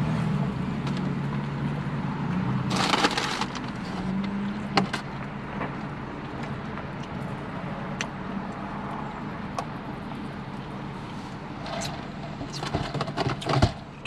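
A man chewing a big bite of a crispy fried chicken sandwich in a car, with a loud crunch about three seconds in and scattered clicks and rustles, over a low steady hum. Near the end there is a cluster of short noisy sounds.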